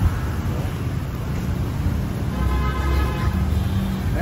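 Street traffic noise with a steady low rumble, joined about halfway through by a louder, steady engine hum from a motor vehicle close by.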